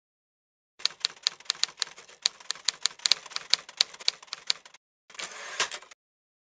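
Rapid typing clicks, about five a second, lasting some four seconds. After a short pause comes a brief sliding rasp with one last click.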